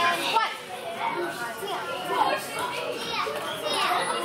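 Several children's voices talking over one another in a large room.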